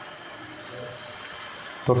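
Faint sound of black PVC insulating tape being unrolled and wrapped around a wire joint by hand. A man starts speaking near the end.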